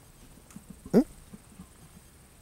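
A man's single short questioning interjection, "eung?", rising in pitch, about halfway through; otherwise quiet with a few faint ticks.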